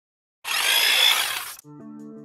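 An edited transition: silence, then a harsh rushing sound effect for about a second, like a power tool, followed by music with held notes starting near the end.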